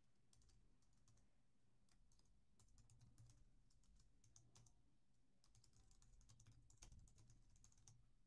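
Near silence: faint room tone with a low hum and scattered light clicks and taps, a cluster of them near the end.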